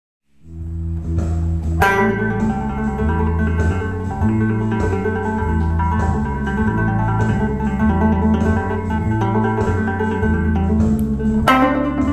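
Electric guitar playing a blues lead over a backing track with a repeating bass line, the lead built on trills: one picked note followed by rapid hammer-ons and pull-offs between two notes. Sharp picked attacks come about two seconds in and again near the end.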